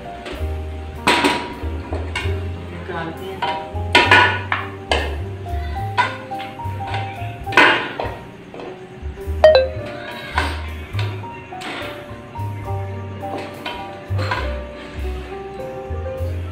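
A wooden spoon scraping and knocking against a metal cooking pot as a thick meat curry is stirred: about eight sharp strokes, loudest about four and eight seconds in, with a short ringing clink near the middle. Background music plays throughout.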